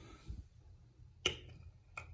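Battery-powered LED can light set down on a ceramic tile floor: one sharp knock about a second in, with a fainter tap before it and another at the end.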